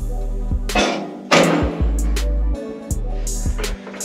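Background music with a beat: deep sustained bass notes under repeated drum hits, with a louder crash about a second in.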